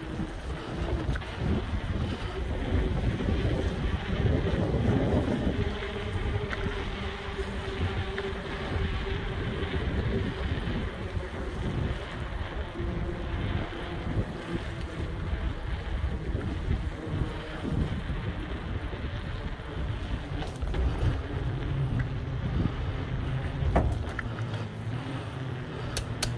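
Wind buffeting a helmet-mounted phone's microphone: a low, uneven rushing that swells and dips in gusts.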